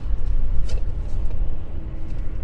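Steady low rumble with no speech over it, the same background rumble that runs beneath the narration.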